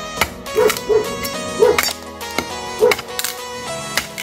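Cutlass blade chopping into a wooden plank held upright, splitting it for firewood: several sharp strikes at uneven intervals, over background music.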